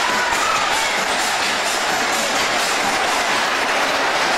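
Music Express ride cars running fast around their undulating circular track: a steady rolling rumble and clatter of the wheels.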